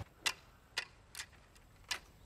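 Four sharp, short clicks at uneven spacing, each dying away quickly.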